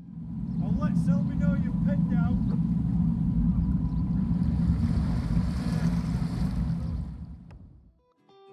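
Low, steady rumble of a narrowboat's engine under way, mixed with wind on the microphone, with faint voices in the first couple of seconds. The sound fades in at the start and fades out shortly before the end.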